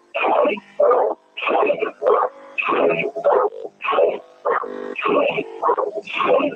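Voices over a telephone line, thin and cut off in the highs, talking without a break, with a steady buzzing hum in the pauses between words.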